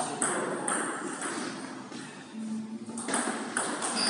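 Celluloid-type table tennis ball clicking against the tables and rubber-faced paddles in an irregular series of sharp pings, thinning out about two seconds in before picking up again near the end.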